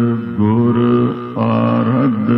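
Sikh devotional music: long held notes that change pitch every half second or so, with a brief dip about a second and a half in.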